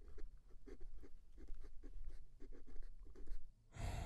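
Writing on paper: a run of short scratching strokes that stops shortly before the end.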